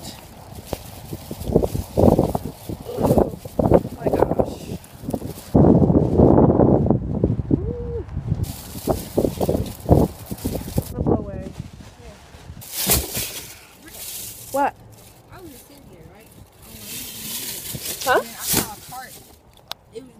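Wind buffeting the phone's microphone in irregular gusts, with one long, strong gust about six seconds in.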